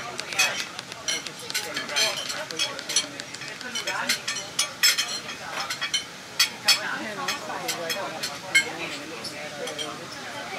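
Indistinct conversation of passengers inside a train carriage, with frequent irregular sharp clicks and clinks, the loudest a few spikes around the middle and near the end.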